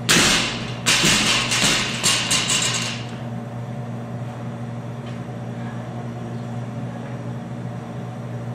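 A 135 lb barbell with bumper plates is dropped onto the gym floor. It lands with a loud crash, bounces and rattles a few times over the next two to three seconds, then settles. A steady low hum continues after it.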